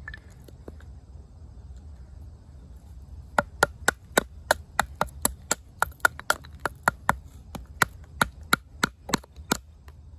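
A wooden baton striking the spine of an OdenWolf W3 fixed-blade knife again and again, driving the blade down through a piece of wood to split it. About twenty sharp knocks, roughly three a second, start a few seconds in after some quiet handling.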